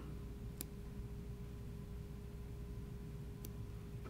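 A faint single snip of fine fly-tying scissors trimming off excess CDC feather butts about half a second in, with another faint click near the end, over a steady low hum.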